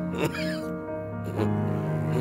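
Background music with sustained, held notes. It is marked by two short sharp accents, about a quarter second and a second and a half in, the first trailing a brief high squeak that falls in pitch.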